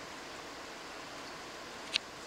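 Steady rushing of a river, an even hiss of flowing water, with one short sharp click just before the end.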